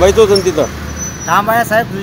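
A man talking in the street, with a pause in the middle. A low rumble sits under his voice and fades out about a second in.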